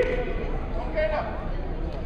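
Raised voices calling out in a gym hall, over a background chatter of spectators; one short high call comes about a second in.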